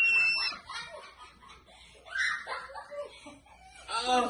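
A high-pitched held squeal that stops about half a second in, followed by quieter scattered laughter, with a louder burst of it about two seconds in.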